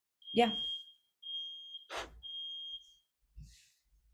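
High-pitched electronic alarm beeping: three long, steady beeps with short gaps between them, then a pause.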